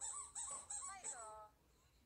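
A toddler's high-pitched squeals and babble: several short rising-and-falling calls, then one longer falling squeal, then quiet.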